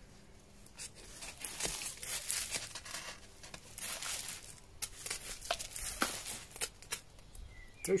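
Ferrocerium rod scraped to throw sparks onto a dry skeletonised 'ghost leaf' tinder bundle: a run of short rasping scrapes, with crinkling as the flash tinder catches and flares up.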